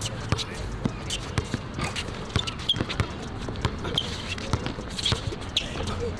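Basketball dribbled on an outdoor court, bouncing about twice a second.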